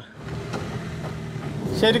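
Camper van's engine and road noise, heard from inside the cabin while driving, a steady low hum growing slowly louder. A man starts speaking near the end.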